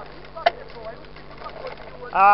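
People talking casually at some distance, the voices faint, with one brief sharp click about half a second in.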